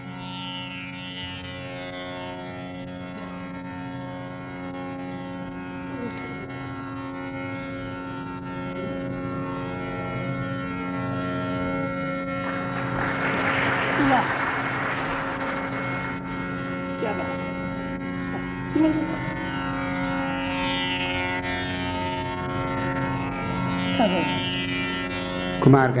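Tanpura drone sounding steadily. Near the middle there is a burst of noise lasting about three seconds, and there are a few brief knocks near the end.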